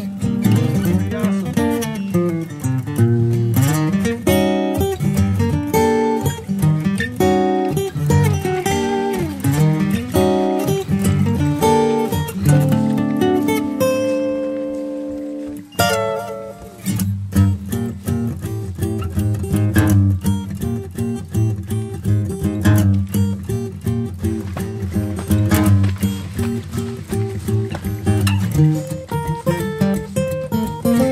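Background acoustic guitar music, plucked and strummed. About halfway through, a held chord rings and fades, then the playing picks up again with a sharp strum.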